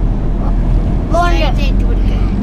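Steady low rumble of a moving car heard from inside the cabin, with a short burst of a person's voice about a second in.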